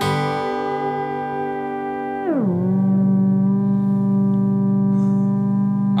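Theremin set to sound a whole chord, holding a sustained chord and then gliding smoothly down about an octave a little after two seconds in, then holding the lower chord steady.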